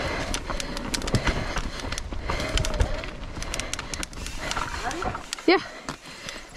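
Mountain bike riding fast down a dirt singletrack: a low rumble of tyres on dirt and wind, with a steady run of clicks and rattles as the bike goes over roots and bumps.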